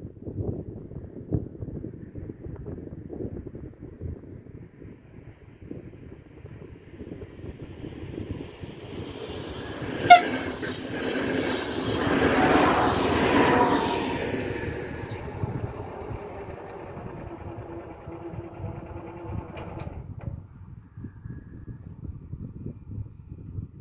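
Double-deck electric passenger train passing over a level crossing: wheel and rail noise building from about six seconds in, loudest a little past halfway, then fading. A brief sharp sound comes just before it is loudest.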